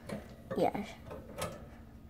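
A single light click about a second and a half in as a plastic part of a hamster cage is pressed while someone tries to pop it out.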